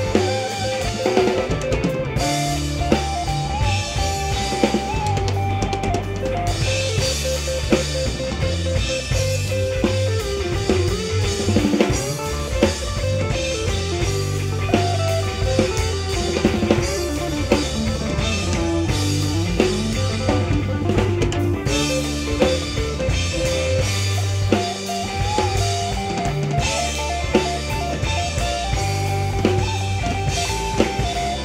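A live roots-rock band playing an instrumental break: a fiddle carries a sliding melody over electric guitar, bass and a drum kit keeping a steady beat.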